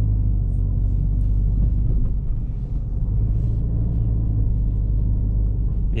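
Steady low rumble inside the cabin of a 2015 Subaru Outback driving on a dirt track: engine and tyre road noise.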